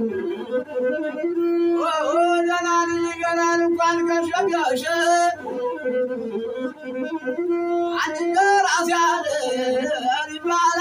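Masinko, the Ethiopian single-string bowed lute, bowed in long held notes, with a man's singing voice wavering over it at times.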